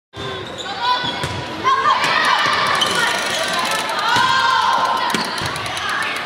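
Volleyball play in a gym: players' shouted calls and voices, with several sharp hits of the ball.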